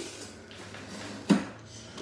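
A single sharp knock of hard plastic about a second in, as the dehumidifier's housing is handled, over a faint low hum.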